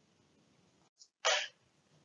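A short, sharp intake of breath through the nose, a sniff, from a man narrating into a microphone, about a second and a quarter in, just after a faint click.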